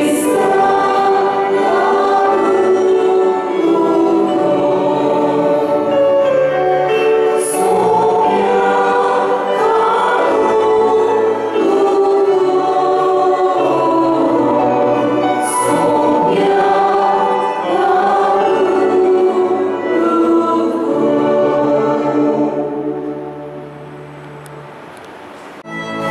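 Choir singing a slow hymn in several voices over a held bass line, fading out near the end.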